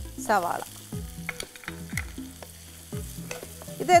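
Food sizzling in hot oil in a frying pan while a spatula stirs it, with occasional clicks of the spatula against the pan.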